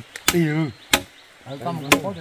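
Large knife chopping meat on a wooden log: three sharp chops about a second apart.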